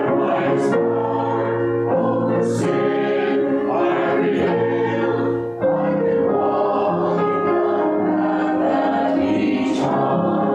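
Church choir singing sacred music in long held chords that move slowly from one to the next. The sound dips for a moment about five and a half seconds in.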